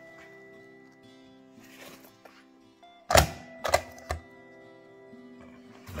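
A self-inking rubber stamp thunked down three times onto a paper credential on a table, about three to four seconds in, the first the loudest. Quiet background music plays throughout.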